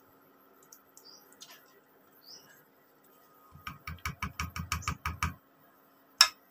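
Quiet at first, then a quick run of about a dozen knocks, some eight a second, lasting under two seconds: steel kitchenware being tapped while thick blended carrot batter is emptied from a blender jar into a round steel pan.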